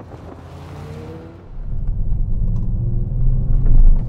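2021 Kia Stinger GT1's 3.3-litre twin-turbo V6 accelerating along the road. A soft rush of air with a faint rising engine note comes first, then a much louder low exhaust rumble from about a second and a half in that builds to its loudest just before the end.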